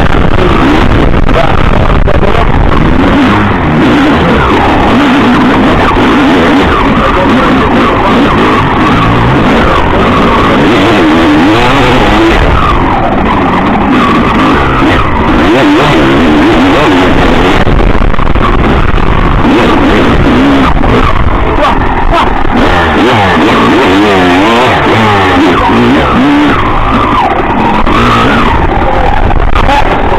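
Enduro motorcycle engine revving hard without a break, its pitch climbing and dropping over and over with throttle and gear changes as the bike labours through soft, deep sand.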